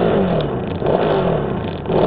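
Motorcycle engine revving with the bike standing in neutral; its pitch falls back twice, near the start and near the end.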